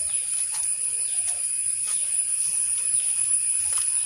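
Steady high-pitched drone of insects in garden vegetation, with a few faint clicks and a low rumble beneath.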